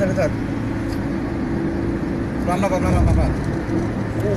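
Steady engine and road noise heard from inside a moving vehicle at highway speed, with brief bits of a voice just after the start and again around two and a half seconds in.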